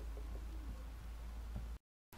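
Low steady hum with a few faint background sounds and no speech, cutting abruptly to dead silence near the end at an edit.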